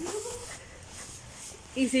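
A person's voice making a short whining, whimper-like sound at the start, then voices breaking in loudly near the end.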